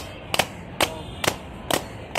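Hand slaps or claps beating out a steady rhythm, about two sharp strikes a second, keeping time for a gana song.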